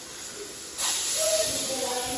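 Welding on a steel truck's rear end: a loud hiss that starts abruptly a little under a second in and keeps going.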